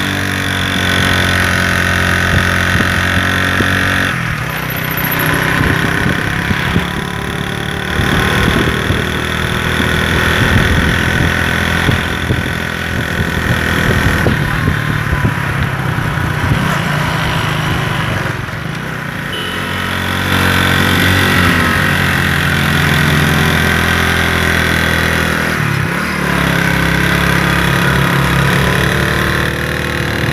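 Motorcycle engine running on the move, its pitch shifting every few seconds with the throttle, under a haze of road and wind noise.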